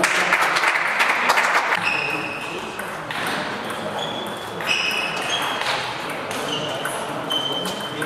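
Table tennis ball pinging off the bats and the table during a rally: short, sharp, high pings about half a second to a second apart, ringing in a large hall. A burst of crowd noise from spectators fills the first two seconds.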